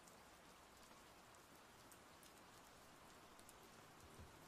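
Near silence: a faint, steady hiss of room tone and microphone noise.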